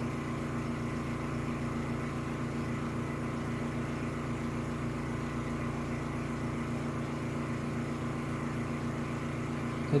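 A steady machine hum: several low tones held together, with a fast, even pulse running through them.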